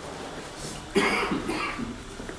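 A person coughing: a sudden burst about a second in, followed by a few shorter coughs.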